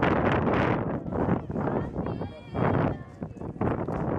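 Wind buffeting the microphone in a low, rough rumble, mixed with indistinct voices of a group of people. A high, wavering voice rises above it about two seconds in.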